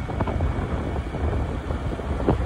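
Wind buffeting the microphone on a moving vehicle, a steady low rumble with scattered crackles, over the road and engine noise of the ride.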